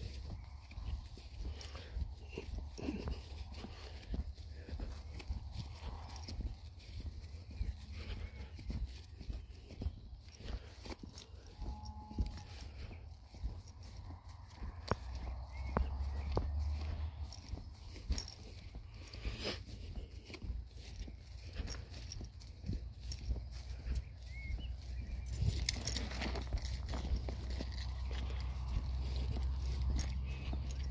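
Footsteps on a grassy towpath with wind rumbling on the microphone, stronger in the second half, and a brief rush of noise about 25 seconds in.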